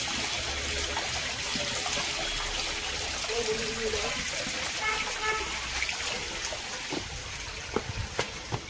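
Water trickling down a rock face, with a hand in the flow.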